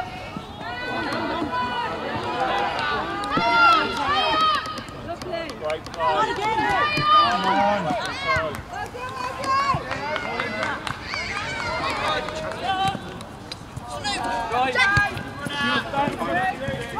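High-pitched young voices shouting and calling out across a football pitch, several overlapping, loudest a few seconds in and again about seven seconds in.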